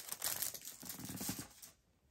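Packaging crinkling and tearing as a coloring book is unwrapped, in irregular crackles that die away about a second and a half in.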